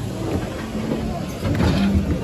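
Indistinct voices over the steady low rumble of the Matterhorn Bobsleds loading station, with a short hiss near the end.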